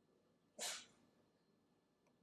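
Near silence, broken about half a second in by one short, sharp breath noise from a person.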